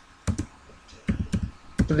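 Computer keyboard typing. Two quick keystrokes come about a quarter second in, followed by a run of several more keystrokes from about a second in.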